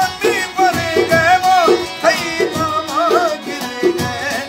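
Balochi folk song: a man sings a wavering, ornamented melody over long-necked stringed instruments that keep a steady strummed rhythm.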